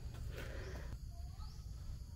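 Quiet outdoor ambience: a steady low rumble with a few faint, short bird chirps about a second in.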